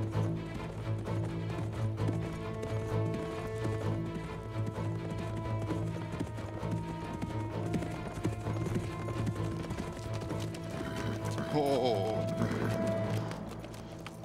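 Hoofbeats of a horse approaching and pulling up, over a low sustained music score that fades out near the end. About twelve seconds in, a horse whinnies.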